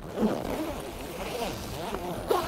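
The zip of a fishing brolly's front panel being drawn along as the panel is zipped onto the shelter, a steady rasping sound.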